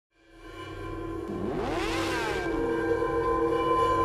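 Produced logo-intro sound: a chord of held tones fades in, and about a second and a half in a whooshing sweep rises and falls back down over it.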